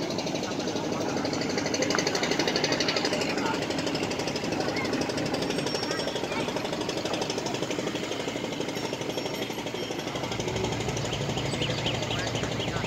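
A boat's diesel engine running steadily with a fast, even knock, heard from on board. A deeper hum joins near the end.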